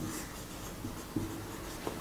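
Dry-erase marker rubbing across a whiteboard as words are written out, faint, with a few light ticks of the tip against the board.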